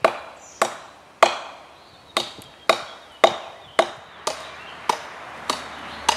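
A camp knife chopping into an oak limb: about ten sharp blade strikes into the wood, nearly two a second, the later strikes lighter.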